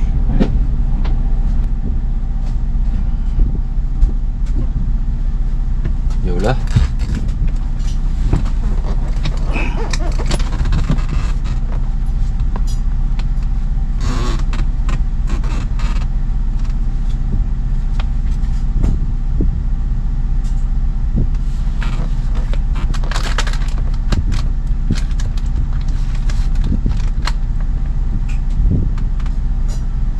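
Boat engine idling with a steady low hum, overlaid by scattered small clicks and taps from a tablet and its holder being handled.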